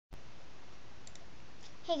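Steady hiss of room tone, opening with a sharp click as the sound starts, with two faint ticks about a second in; a girl's voice says "Hey" right at the end.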